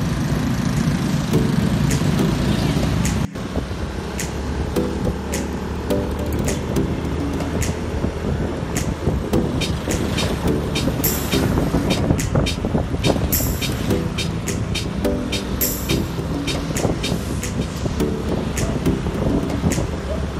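Motorcycle ride noise, the steady run of the engine and road. A few seconds in, background music with a melody and a light ticking beat comes in over it.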